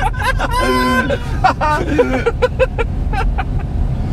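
Laughter inside a moving car's cabin: a long, held laughing cry about half a second in, then quick bursts of laughter, all over the car's steady low road and engine rumble.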